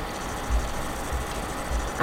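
Steady background hiss and low hum of the recording, with three soft, low thumps as a wooden box and small paper pieces are handled on the tabletop.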